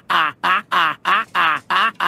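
A quick run of duck-like quacks, about seven evenly spaced calls in two seconds.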